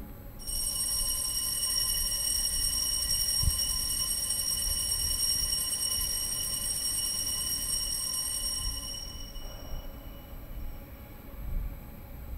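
Altar bells rung at the elevation of the consecrated host, marking the consecration: a bright, steady ringing of several high tones that starts abruptly and stops about nine seconds in.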